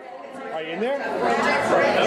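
Several people talking over each other in a busy bar, fading in from silence and getting louder over the first second or so.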